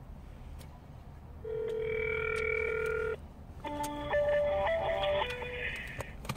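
A telephone call heard over a speaker: one ring of the ringback tone, a steady tone of under two seconds, then about two seconds of short changing notes as the automated line answers with a chime.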